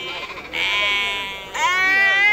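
Sheep bleating: one bleat about half a second in, then a louder, longer bleat starting near the end.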